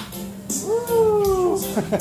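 A single long, drawn-out meow that rises briefly and then slides slowly down in pitch for about a second.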